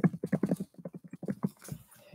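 Rapid run of light taps or clicks, about six to eight a second, that stops shortly before the end.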